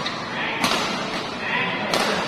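Badminton racket strikes on the shuttlecock during a rally: two sharp hits about 1.3 seconds apart, over the chatter and calls of a crowd.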